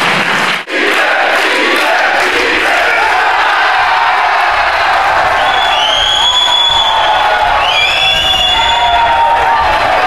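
Wrestling audience cheering and shouting. The sound drops out briefly under a second in, and from about five and a half seconds in, high-pitched shrieks rise above the crowd.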